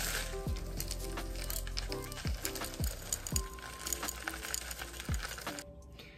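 Bath salts poured into a glass vase, hissing as they fall and clinking against the glass. Background music with a deep, falling bass hit every second or so plays underneath.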